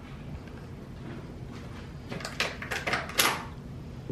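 A few short clicks and knocks, about two to three seconds in, of small hard objects being handled on a table, over a low room hum.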